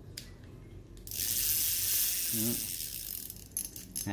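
Daiwa size-2000 spinning fishing reel cranked by hand, its gears and rotor whirring steadily for about two and a half seconds from about a second in. A few clicks of handling surround it. The seller judges the reel to run smoothly.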